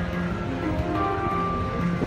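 Handpan played live, struck notes ringing out and sustaining in long steady tones over a low rumble.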